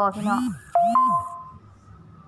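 A woman's voice speaks briefly. Then comes a two-note electronic chime, a lower tone followed quickly by a higher one, held for about half a second before fading.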